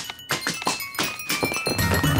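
Bubble wrap being popped with a finger, a cartoon sound effect: a quick run of sharp pops, several a second, over background music.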